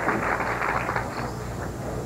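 Audience applauding a strike in a bowling center, the clapping slowly tailing off.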